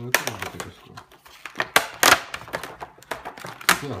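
Stiff clear plastic clamshell packaging being handled and pried at, giving a series of sharp plastic clicks and crackles, the loudest about two seconds in and again near the end.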